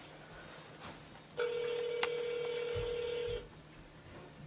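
Telephone ringback tone heard through a mobile phone's earpiece: one steady ring about two seconds long, starting a little over a second in, the signal that the number being called is ringing at the other end.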